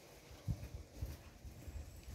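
Footsteps walking on a tiled walkway, soft low thuds about two steps a second.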